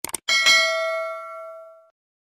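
Notification-bell sound effect: two quick clicks, then a bright bell-like ding that rings on and fades away over about a second and a half.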